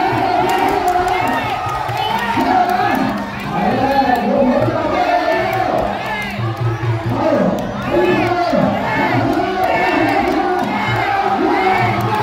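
A large ringside crowd shouting and cheering, with many voices overlapping without a break.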